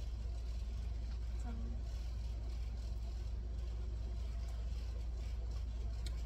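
A steady low hum that does not change, with a brief faint murmur of a voice about a second and a half in.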